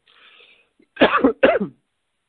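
A man clearing his throat with two short coughs about a second in, heard over narrow telephone-line audio.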